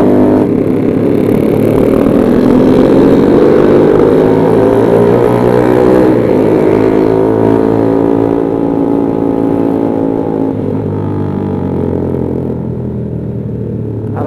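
Honda CB150R's single-cylinder engine pulling the bike along. Its pitch climbs over the first few seconds, drops at a shift about six seconds in, climbs again, then falls away and gets quieter as the throttle eases near the end.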